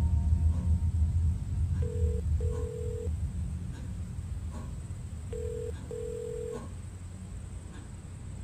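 Telephone ringback tone heard through a mobile phone earpiece: a short beep followed by a longer one, the pair repeating about every three and a half seconds, three times, as the call rings unanswered at the other end. A low background rumble fades out underneath.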